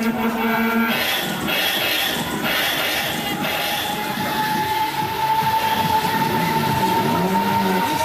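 Break Dancer fairground ride running, its gondolas rumbling and whirling round with fairground noise around it. A long steady high tone sounds through the second half.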